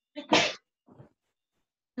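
A person sneezing once, short and sharp, followed by a faint short sound about a second in.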